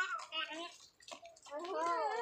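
Speech only: people talking, with a voice saying a short phrase in Mandarin near the end.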